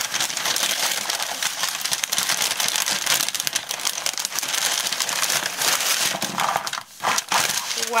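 Plastic packaging crinkling and rustling steadily as it is handled and pulled out of a cardboard box, thinning to a few short rustles near the end.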